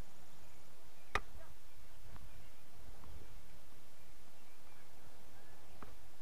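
Light taps of a tennis ball on racket strings: a sharp tap about a second in, a couple of faint ones, and a tap just before the end as the ball is flicked off the strings, over a steady hiss.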